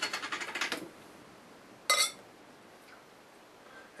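Glass beer bottle and drinking glass handled on a table: a quick run of rapid clicks lasting under a second, then one glassy clink with a brief ring about two seconds in.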